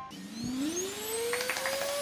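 Small handheld battery fan running, a rush of air with a motor whine that rises steadily in pitch as it spins up.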